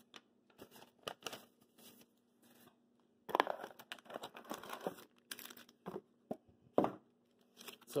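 Sealed trading card packs in foil and wax-paper wrappers crinkling and rustling as they are handled and lifted out of a cardboard box: a few light clicks and rustles at first, then steadier, louder crinkling from about three seconds in.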